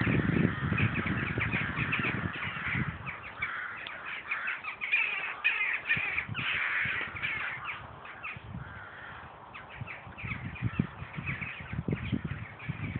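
A flock of birds calling in many short, overlapping calls that thin out for a while past the middle, with wind gusting on the microphone.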